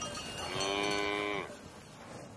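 A cow mooing once: a single call of about a second that drops in pitch as it ends.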